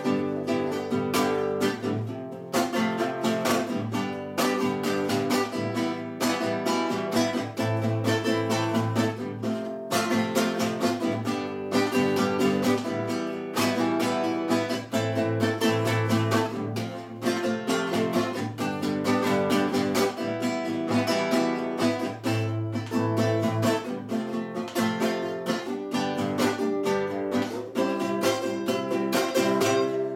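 Nylon-string classical guitar strummed in a quick, even rhythm, playing chords with no singing.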